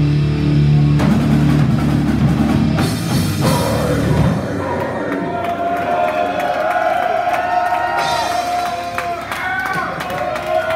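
Live metal band with electric guitar, bass and drum kit playing loud and heavy; about four seconds in the band stops and a last chord rings out while the crowd shouts and cheers.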